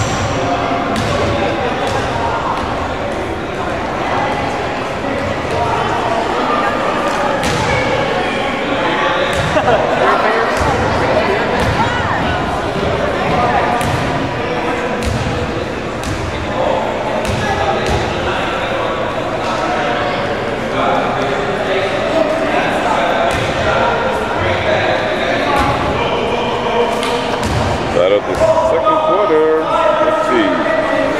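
Chatter of many voices echoing in a large gym, with a basketball bouncing on the hardwood court again and again.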